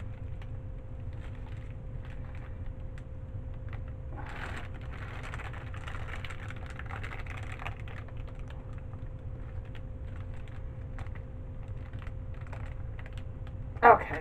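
Small irregular clicks and crinkles of a plastic piping bag handled in gloved hands as soap batter is squeezed out into a silicone mold. There is a longer rustle from about four seconds in, and a steady low hum underneath throughout.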